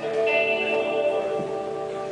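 Guitar chord struck once and left ringing, slowly fading.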